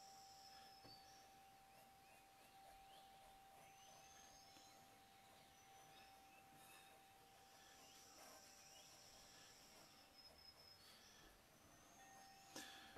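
Near silence: room tone with a faint steady tone running throughout.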